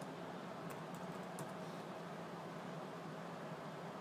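Faint computer keyboard typing: a few light keystrokes in the first second and a half as figures are entered into a spreadsheet, over a steady low hum and hiss.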